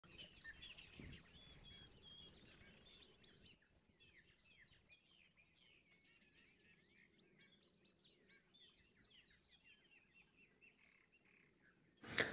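Near silence with faint bird chirping: many short chirps throughout, over a faint steady high-pitched tone.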